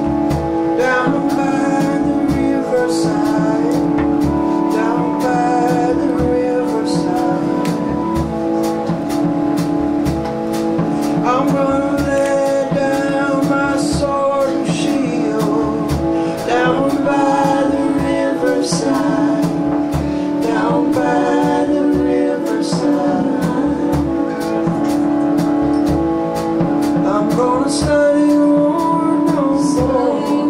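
Live band music: a man singing over piano and guitar, with a steady drum beat.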